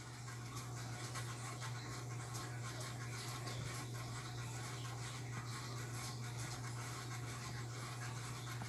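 A faint, steady low hum under a light scratchy hiss, unchanging throughout.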